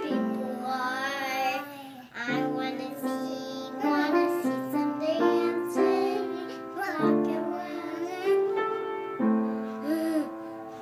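Young girls singing a slow song, with long held notes.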